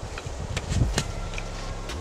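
Gear being handled on a forest floor: footsteps and the rustle of a nylon stuff sack being picked up, with a few sharp knocks near the middle. A low steady hum comes in during the second half.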